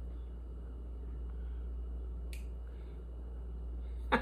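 Quiet room tone with a steady low hum, broken once a little past halfway by a single short, faint click.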